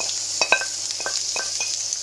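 Courgette pieces sizzling in hot oil in a frying pan while a wooden spoon stirs them, knocking and scraping against the pan about five times.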